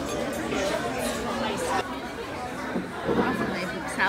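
Background chatter of many diners talking at once in a busy restaurant dining room.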